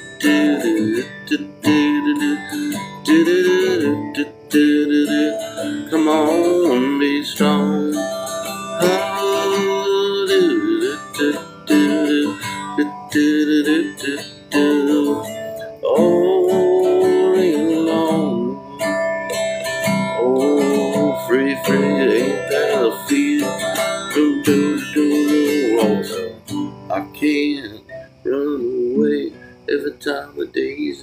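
Acoustic guitar strummed steadily, with a man's voice singing wordless, wavering notes over it at times.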